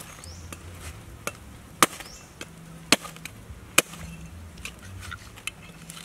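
Meat cleaver chopping through a large fish onto a wooden chopping block: three sharp strikes about a second apart near the middle, with a few lighter knocks around them.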